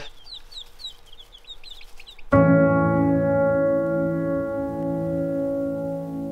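Baby chicks in a brooder peeping softly, a quick run of short, high, falling peeps. A little over two seconds in, music starts abruptly with a held chord, much louder than the chicks, and slowly fades.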